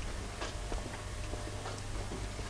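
Footsteps of someone walking along a carpeted corridor: a few light, irregular ticking steps over a steady low hum.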